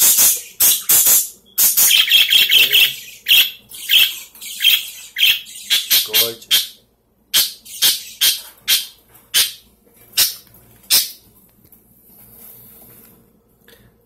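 Budgerigars chirping and squawking: a rapid run of short, sharp, high calls for about the first ten seconds, then only a few faint ones near the end.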